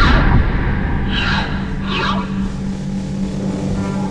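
Whooshes on an animation soundtrack: a broad whoosh at the start, then two shorter swooshes about one and two seconds in, over a low steady drone.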